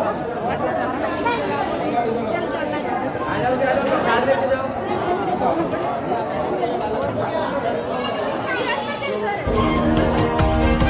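Crowd of worshippers chattering and talking over one another in a large hall. Near the end, music with a deep bass and a beat cuts in.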